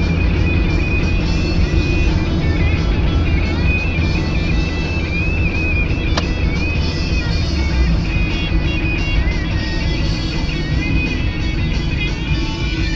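Steady road and engine rumble inside a moving car's cabin, with music playing over it. A single sharp click sounds about halfway through.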